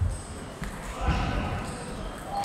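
Table tennis ball clicking off bats and table during the last strokes of a rally, a few sharp knocks about half a second apart, echoing in a large hall, with voices in the background.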